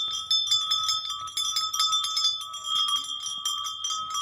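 Small bells jingling continuously, many quick strikes over a steady ringing.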